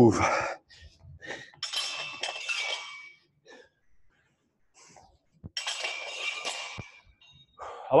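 Metal weight plates slid onto a barbell's sleeves: two bursts of scraping and clinking with a faint metallic ring, about four seconds apart, as the bar is loaded heavier.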